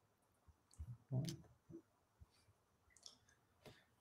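Near silence with a few faint, scattered clicks and a brief soft low sound about a second in.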